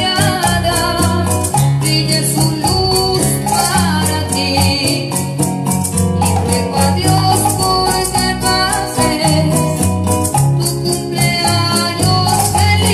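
Live song on a Yamaha electronic keyboard, its built-in accompaniment giving steady bass notes and an even, shaker-like percussion rhythm, with a woman singing over it into a microphone.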